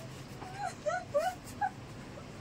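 A run of about five short, high whimpering squeals, each bending up and down in pitch.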